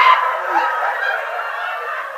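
Audience laughing, with one loud high whoop of laughter right at the start, then fading a little.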